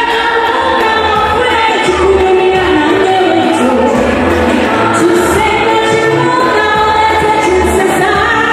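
A woman singing through a microphone over amplified backing music with a pulsing bass.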